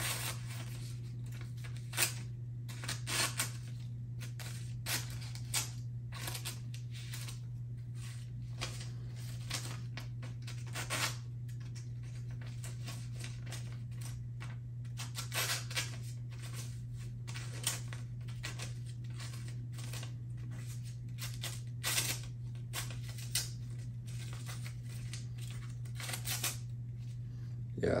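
A dull knife blade pushed through phone book paper, snagging and tearing it in short, irregular rips and crinkles rather than slicing cleanly. The edge is too dull to cut the paper easily and needs sharpening. A steady low hum runs underneath.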